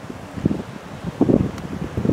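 Wind buffeting the camera's microphone: low, uneven gusts, strongest a little over a second in.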